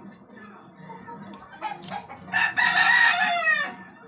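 A loud, harsh animal call lasting over a second, starting after two short calls and falling in pitch at the end.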